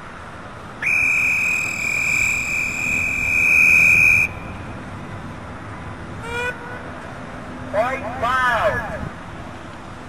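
A Fanon MV6SW 20-watt megaphone on its whistle setting: one steady high-pitched tone that starts suddenly about a second in, grows slightly louder and cuts off after about three and a half seconds. Later come two short pitched sounds, the second rising and falling.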